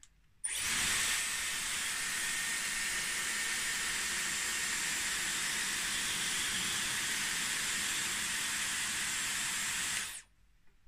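Dyson Airwrap curling barrel blowing air: a steady rush of air with a faint high motor whine. It switches on about half a second in and cuts off at the very end.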